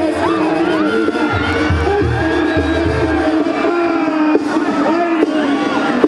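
Live Mexican banda brass band playing: a held, wavering melody line over a repeated low bass figure, with crowd noise underneath.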